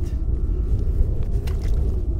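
Wind buffeting the microphone on open ice, a steady low rumble, with a faint click or two.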